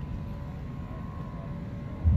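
Low steady rumble of street traffic, with a faint steady high tone over it.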